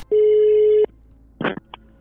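A single steady telephone line tone, one beep a little under a second long heard over the phone line, as a call is placed; a brief short sound follows about a second and a half in.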